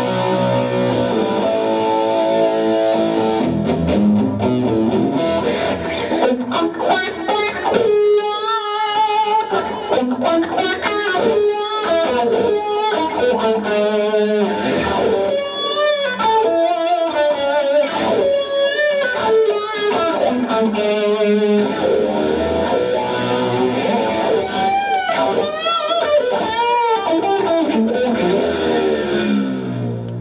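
Electric guitar played through a Line 6 Helix's Fassel wah model, the expression pedal rocked back and forth so each note's tone sweeps open and closed in a vocal-like 'wah'. Held chords open the passage, then faster lead lines with repeated wah sweeps.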